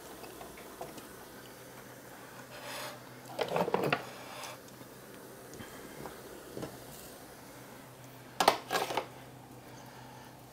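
Pots, dishes and utensils clinking and clattering as steamed vegetables are dished out, in two short bursts about three and a half and eight and a half seconds in, over a low steady hum.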